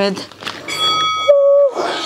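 A two-note electronic beep: a steady high tone for about half a second, dropping to a lower tone for under half a second, the kind an interval timer gives at the end of a set.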